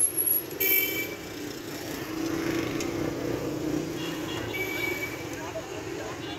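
Busy market street traffic: motor vehicles running steadily, with two short horn beeps, one soon after the start and another about three-quarters of the way through.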